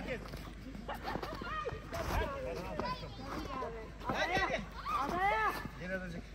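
Excited voices of adults and children calling out during a snowball fight, with high-pitched calls about four to five seconds in, and a brief low thump about two seconds in.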